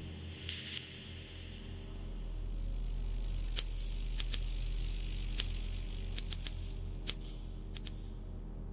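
Electronic part of a contemporary orchestral piece made from electrical sounds: a steady low mains-like electric hum under a high hiss that swells and eases, with about a dozen sharp crackling clicks like short-circuit sparks from about halfway in.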